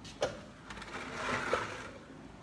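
Handling noise as a phone camera is turned around: a click, then a soft rustle that swells and fades over about a second.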